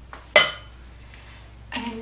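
A single sharp clink of dishware, about a third of a second in, ringing briefly.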